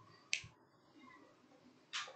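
Two sharp clicks about a second and a half apart. The second, near the end, is a light switch turning the room light off.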